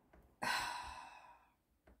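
A woman's sigh: a single breathy exhale starting about half a second in and fading away over about a second.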